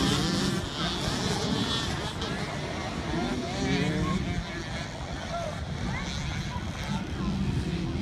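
A pack of small youth motocross bikes running and revving as they race around a dirt track, the sound weaker after the first second, with people's voices mixed in.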